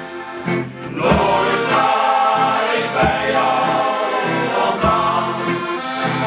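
Men's shanty choir singing together with accordion accompaniment, and a drum beat about every two seconds.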